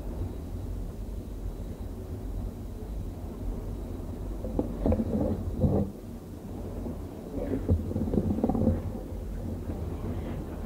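Steady low rumble and hum of an old cassette recording, with muffled bumps and rustles on the microphone about halfway through and again near the end as it is handled.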